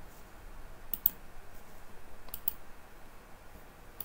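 A few light, sharp clicks over quiet room tone: two close pairs, about one second in and again about two and a half seconds in.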